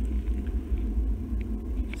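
Low, uneven rumble on the microphone, with no other distinct sound standing out.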